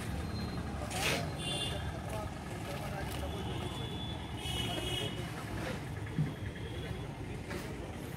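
Outdoor building-site background: a steady low rumble with faint voices and a few knocks, the loudest about six seconds in.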